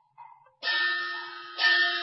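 Teochew opera instrumental accompaniment: faint notes, then two loud struck, ringing metallic notes about a second apart, the second the louder.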